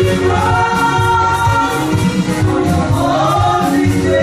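A small group of women singing gospel praise and worship together into microphones, with held, gliding notes over a steady low instrumental accompaniment.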